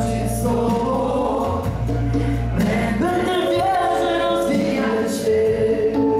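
Live worship band of keyboard, guitar and drums playing a song, with a group of voices singing along in long held notes.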